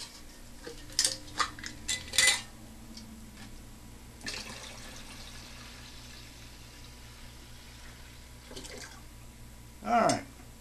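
Glass jars clinking and knocking as they are handled, then water poured from a glass mason jar into a plastic watering can, a steady splashing pour of about five seconds.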